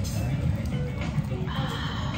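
Background music with a satisfied, drawn-out 'kaha' exhale from a woman near the end, after a sip of iced coffee.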